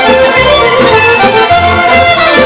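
Live Macedonian folk band playing: clarinet leading the melody over accordion, with bass notes pulsing in a steady beat.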